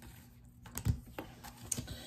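Oracle cards being handled and laid down on a wooden desk: a handful of light, sharp taps and flicks of card on card and on wood, the loudest about a second in.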